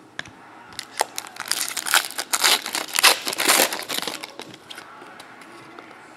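A foil trading-card pack wrapper crinkling and tearing as it is ripped open. A dense run of crackles lasts from about a second in until about four seconds.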